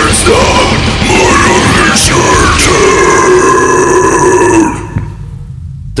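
A male vocalist's deep deathcore growls and screams over a loud metal backing track. The last is one long held growl that cuts off with the music about three-quarters of the way through.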